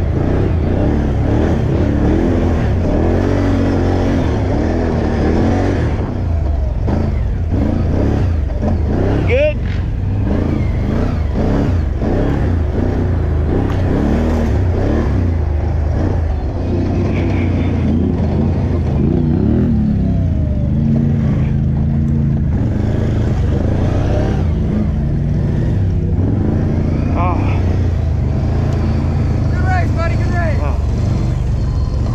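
A Can-Am utility ATV's engine running hard under race throttle over a rough trail, its revs rising and falling constantly as the rider accelerates, backs off and takes the turns.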